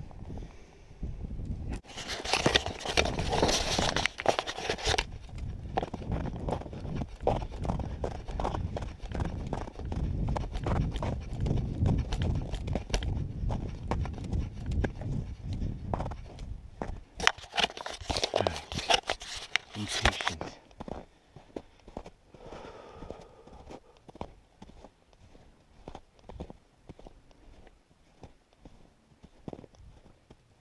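Footsteps crunching through snow on a frozen lake, a steady walking rhythm, broken by two louder rushes of noise about two seconds in and again about seventeen seconds in. The steps grow sparser and quieter for the last third.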